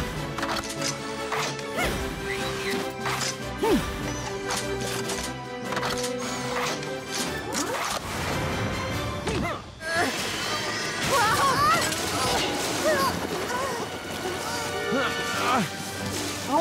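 Cartoon action soundtrack: upbeat background music over mechanical clanking and crashing sound effects as the robot cars transform. After about ten seconds, noisy spraying water and short voice exclamations take over.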